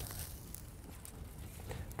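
Faint clicks of metal grill tongs against a kettle grill as a steak is lifted and moved aside, over a low rumble of wind.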